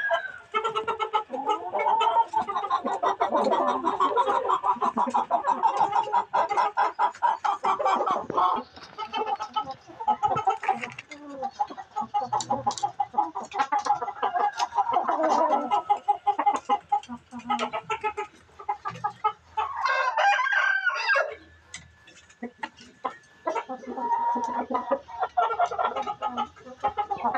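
Domestic chickens clucking steadily and rapidly, many calls overlapping, with a louder, higher-pitched call about twenty seconds in.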